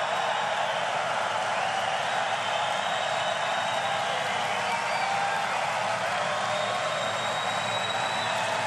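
Large crowd cheering and applauding loudly and steadily, with a few faint whistles.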